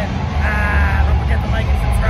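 A man's high, wavering shout held for about half a second, with a shorter yell near the end, over the steady low rumble of an arena crowd.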